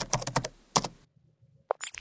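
Computer-keyboard typing clicks, a sound effect for text being typed out letter by letter: a quick run of keystrokes that stops about a second in.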